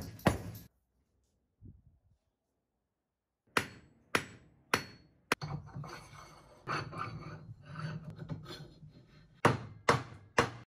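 Sharp hammer taps on steel shaft parts, seating a collar and bearings onto a shaft. A few strikes come at the very start, four more about a second apart from around the middle, then lighter metal clinking and scraping as the parts are fitted, and three more taps near the end.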